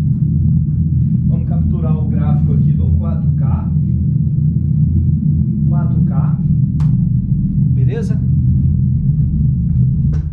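Eros Target Bass Double Magnet 4K 15-inch subwoofer reproducing a pink-noise test signal for a frequency-response measurement: a steady, deep rush of noise with nothing above the bass.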